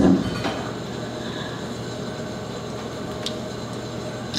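Steady background noise of the room, an even rush with no voice in it, with one faint click about three seconds in.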